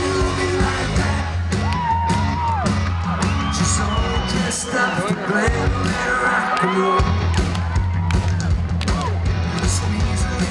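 Live pop band playing, with sung vocals over a steady bass line and drums, and yells and whoops from the crowd. The bass drops out briefly about seven seconds in.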